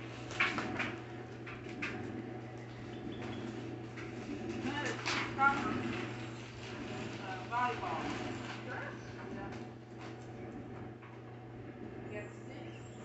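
Faint, distant voices talking off and on, with a few sharp clicks and knocks in the first seconds, over a steady low hum.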